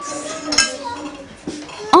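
Dishes and cutlery clinking in a canteen, with one sharp clink about half a second in.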